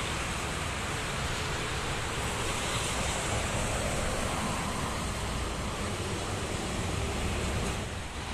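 Steady rushing noise of highway traffic: the tyres and engines of buses and trucks going past on a multi-lane toll road, with wind on the microphone.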